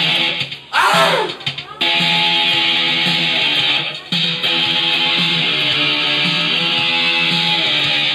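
Electric guitar playing held, distorted chords that change every second or so. About a second in, the sound drops out briefly and a sweeping pitch glides down before the chords come back.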